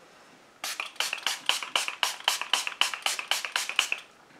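Finger-pump facial mist bottle (PÜR Miracle Mist setting spray) pumped rapidly, giving a quick run of short sprays at about five or six a second. The sprays start about half a second in and stop near the end.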